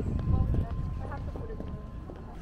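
Outdoor street ambience: indistinct voices of passers-by with low thumps and rumble, strongest in the first half second.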